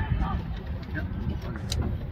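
Distant voices of rugby league players and spectators calling across the field over a steady low rumble, with a couple of sharp clicks.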